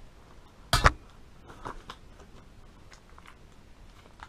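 Unpacking on a tabletop: one sharp knock about a second in, then faint rustling and small clicks of paper and packaging being handled.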